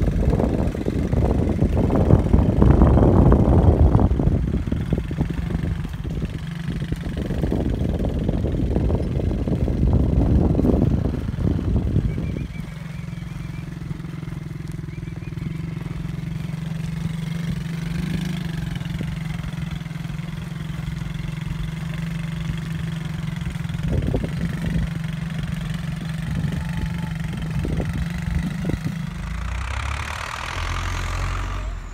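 A motor vehicle's engine running. For about the first twelve seconds it is loud and rough, with heavy rumbling and knocking, then it settles into a steady low hum until near the end.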